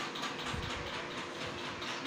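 Steady background noise with a faint steady hum, and a low bump about half a second in and another near the end.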